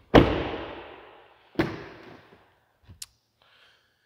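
A pickup truck's rear door slammed shut with a solid thud that echoes off the room, then a second, lighter thud about a second and a half later, and two short light clicks near the end.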